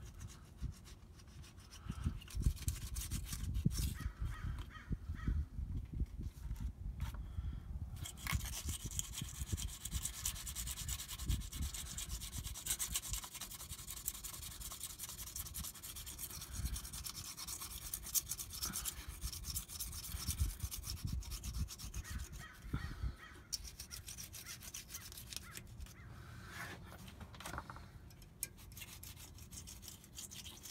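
Plastic scraper scraping old gasket material off a rear differential housing's metal cover flange: repeated rough scratching strokes, heaviest through the middle stretch, over low bumps from handling.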